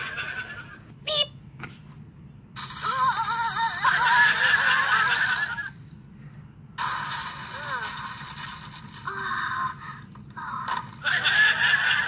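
Cartoon soundtrack played through a computer's speakers and picked up by a phone: high, wavering character voices with some music, in bursts with short gaps, thin-sounding with almost no bass.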